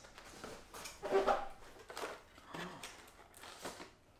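Cardboard packaging being handled and opened: scattered rustles and light knocks of small boxes and flaps. A short voiced exclamation about a second in is the loudest sound.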